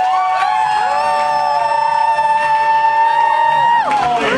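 A live band with electric guitar holds a long final chord of several steady notes, which stops together just before the end, with the crowd beginning to cheer.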